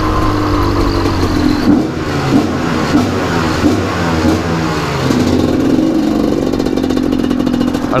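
Gas Gas EC 250 two-stroke enduro motorcycle engine, loud, ridden through a concrete underpass, its note rising and dropping with throttle blips for the first few seconds, then pulling more steadily after about five seconds as the bike leaves the tunnel.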